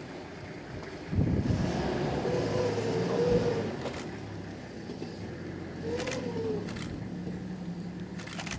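A safari vehicle's engine running with a low, steady rumble, growing louder about a second in. A brief wavering higher tone rides over it twice.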